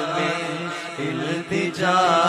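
A man singing an Urdu naat into a microphone, drawing out long, wavering melodic notes over a steady low drone.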